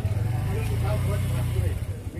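A motor vehicle passing close by on the road, a steady low engine rumble that fades out about a second and a half in, with people talking in the background.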